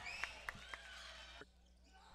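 Basketball sneakers squeaking and footfalls on a hardwood court as players run, a few sharp steps about a quarter second apart, then quieter about a second and a half in.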